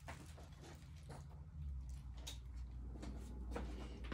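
Faint handling noises with scattered small clicks, like small objects being picked up and moved about, over a low steady hum that grows a little about a second and a half in.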